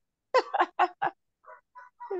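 A woman laughing over a video call: a quick run of about five short laughing pulses, then two faint ones near the end.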